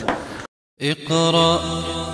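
Chanted Arabic nasheed beginning after a brief cut to silence: a voice holds long, steady notes over a low drone.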